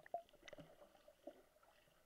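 Faint, muffled underwater bubbling as a swimmer's plunge sends air bubbles rising, picked up by a submerged microphone, with a few small ticks and gurgles.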